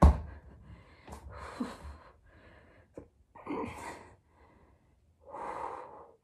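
A thump at the start as a person shifts from forearms up onto straight arms in a plank. Then three heavy, strained exhales a couple of seconds apart: effort breathing under a long plank hold.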